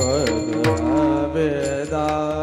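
Man singing a devotional kirtan melody into a microphone, over held accompaniment notes and regular drum strokes.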